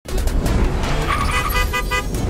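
Produced advert intro sound effects: a loud, full rush over a deep rumble, then, from about halfway, a quick run of short bright beeps.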